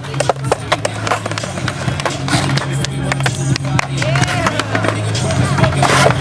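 Skateboard riding a concrete bowl: urethane wheels rolling on the concrete, with repeated sharp clicks and clacks of the trucks and board against the metal coping at the lip, over a steady low hum.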